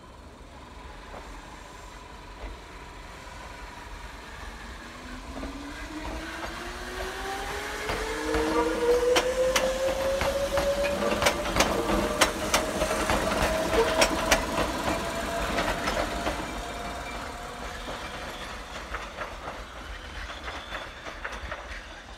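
Konan Railway Series 7000 electric train, ex-Tokyu 7000, pulling away from the station. Its motor whine rises steadily in pitch as it gathers speed, and its wheels click over the rail joints as it passes close by. The sound is loudest in the middle, then fades as the train moves off.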